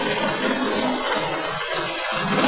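OSTAD No. 3 rice mill (paddy huller) running steadily as milled rice pours from its outlet chute. Background music plays over it.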